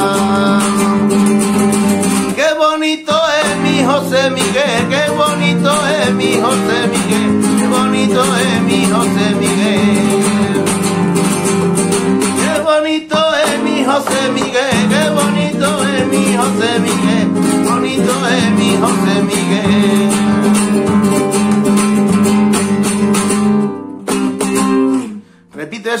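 Nylon-string Spanish guitar with a capo, strummed in a rumba rhythm, with a man singing along. The playing breaks off briefly twice and stops about two seconds before the end.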